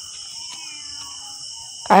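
Steady high-pitched chorus of crickets and night insects. Over it, in the first second and a half, comes a faint, distant wavering call that is captioned as cat noises.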